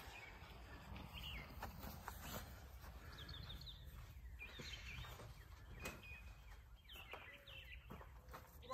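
Faint outdoor ambience with a low steady rumble. Small birds chirp briefly a few times, and there are a few soft knocks.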